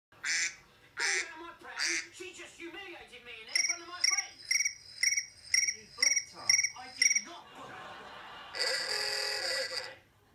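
Phone ringtones playing through the phone's small speaker: three short tones in the first two seconds, then a chirping trill that repeats about twice a second for some four seconds, then a held tone near the end.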